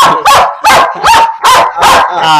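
Rottweiler barking loudly in a quick series of about six barks.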